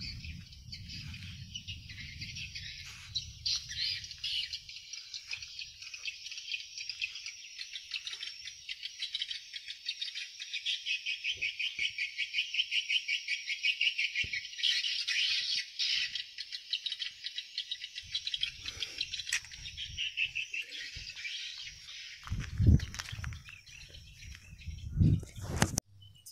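Swiftlet calls: a steady, high chirping twitter made of fast, even pulses, loudest in the middle.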